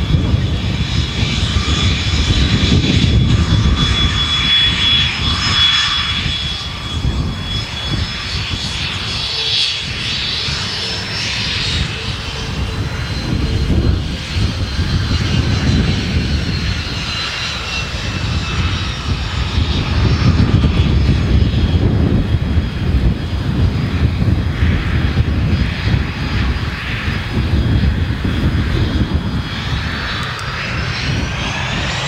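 Twin GE Honda HF120 turbofans of a HondaJet HA-420 whining at taxi power, several high tones drifting slightly in pitch as the jet turns, over a continuous low rumble.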